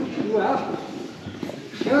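People's voices talking, with a few soft knocks, and a quieter moment in the middle.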